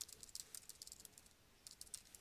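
Faint typing on a computer keyboard: a quick run of keystrokes, a pause, then a few more keystrokes near the end.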